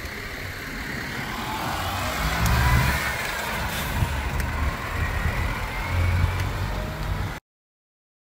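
A motor vehicle's engine running with a low rumble and a faint pitch that rises and falls, until the sound cuts off suddenly near the end.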